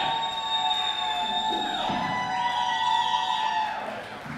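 Live rock band at the end of a song, holding two long sustained notes one after the other, with no drum beat under them; the sound fades just before the end.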